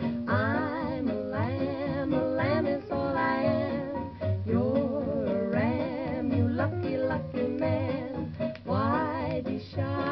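Early-1950s hillbilly country record played from a shellac 78: music with guitar accompaniment under a wavering, vibrato-rich melody line.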